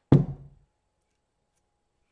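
A single sharp knock, with a short low ringing tail, as a ceramic plate being turned over bumps against the wooden worktable.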